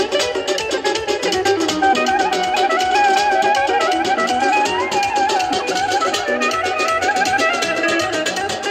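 Live band playing traditional dance music: an ornamented, wavering lead melody over a steady drum beat, with plucked strings.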